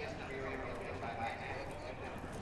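A thoroughbred racehorse shifting about on the dirt track as handlers take its bridle, with horse sounds and people's voices over a steady low rumble.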